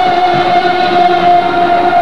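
Live Punjabi bhangra music: one long note held steady and loud over faint dhol drum beats.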